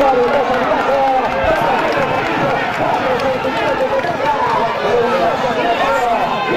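A race caller's voice calling the finish of a horse race in Spanish, fast and without a pause.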